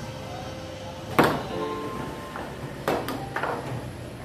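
Foosball table in play: one sharp knock about a second in, the loudest sound, then a quick cluster of knocks near the end as the ball is struck by the figures and the rods bang. Music with held notes plays underneath.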